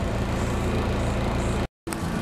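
A steady low mechanical hum, broken off abruptly by a short gap near the end.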